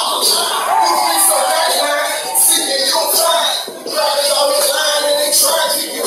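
Hip hop backing track with a steady beat played over a stage sound system, with a man's voice rapping over it.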